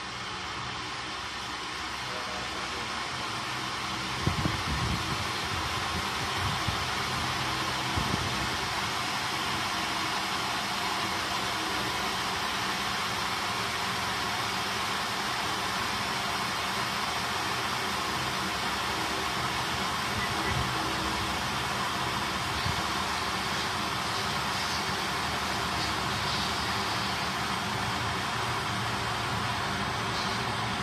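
Mabuhay Star electric kettle heating water toward the boil: a steady hiss and rumble that builds over the first few seconds, with a few low pops between about four and eight seconds in.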